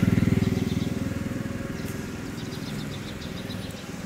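A vehicle engine running with a rapid, even pulsing beat, loudest at first and fading steadily away.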